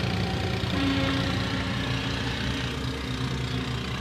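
A steady, low engine hum, like an engine idling, holding one even pitch.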